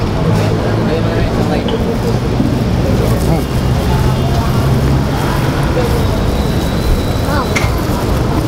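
Busy street ambience: a steady low engine hum from traffic, with the chatter of a crowd of people around it.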